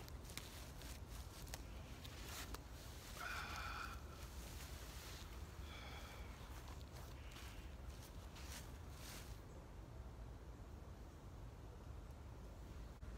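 Faint footsteps crunching on dry fallen leaves and rustling as a person walks over and lowers himself into a canvas sling chair hung from a wooden pole tripod, with two brief high sounds about three and six seconds in. The crackling dies away after about nine seconds as he settles still.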